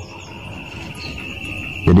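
Insects chirping, a faint steady high trill through a pause in speech.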